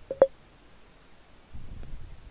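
A quick double click with a short blip as a put trade is placed on the trading platform, the second click the loudest; a soft low rumble follows near the end.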